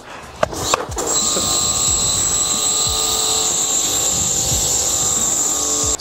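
Electric pressure washer (jet wash) running, its pump motor humming steadily under the hiss of water spraying, for a low-pressure rinse. It starts about a second in after a couple of clicks and stops suddenly at the end.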